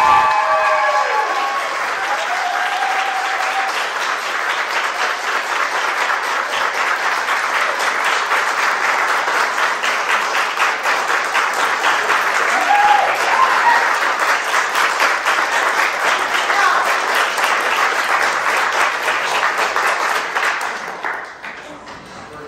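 A room full of people applauding for about twenty seconds, with a few voices calling out over the clapping, before it dies away near the end.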